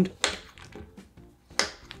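Two sharp knocks of a kitchen knife cutting through a Snickers bar onto a wooden tabletop, one about a quarter second in and a louder one near the end, over quiet background music.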